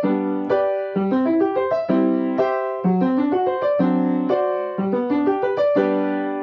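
Piano playing a quick G major chord exercise in both hands, broken-chord note runs alternating with blocked chords, ending on a held chord that rings and fades near the end.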